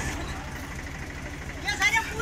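Diesel tractor engine idling with a steady low chugging beat.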